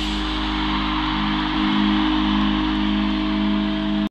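Live rock band's amplified electric guitars holding one sustained chord that rings on steadily, without strumming or drumming.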